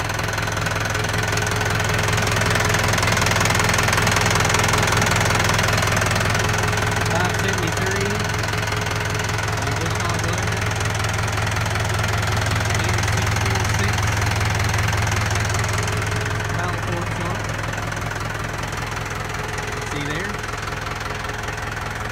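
Massey Ferguson 573 tractor's diesel engine idling steadily.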